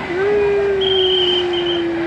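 A long held tone that slides slowly lower in pitch, with a short high whistle-like tone about a second in, over the steady wash of splashing water in a pool as an inflatable tube comes off a water slide.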